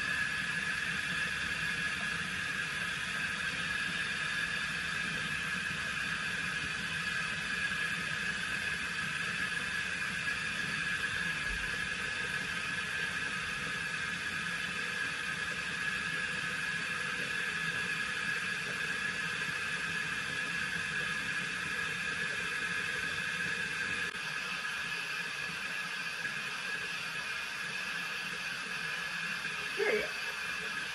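Small battery-powered facial cleansing brush running against the skin, a steady buzzing whine that holds the same pitch throughout.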